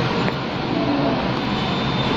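Steady background noise, an even hiss and hum with no distinct events.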